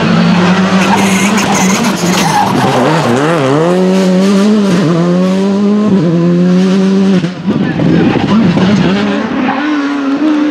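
Rally car engine at high revs through a corner. The pitch dips and climbs as the driver lifts off and gets back on the throttle, with several quick gear changes, and a break about seven seconds in. Near the end a second rally car's engine comes in at a steady pitch.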